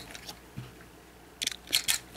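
Plastic LEGO pieces clicking and rattling as a small brick-built toy car is handled, a few short clicks bunched about one and a half seconds in.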